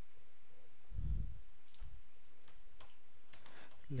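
A low thump about a second in, then a computer keyboard being typed on: a quick run of separate key clicks through the second half.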